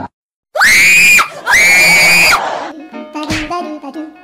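A person screaming twice, loud and high-pitched, each scream under a second long, in fright at a toy snake revealed under a pot. Light music follows near the end.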